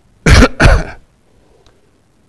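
A man clearing his throat loudly, close to the microphone, in two quick rasping bursts.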